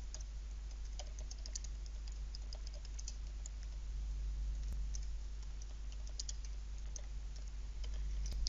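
Typing on a computer keyboard: a run of quick, light key clicks, over a steady low hum.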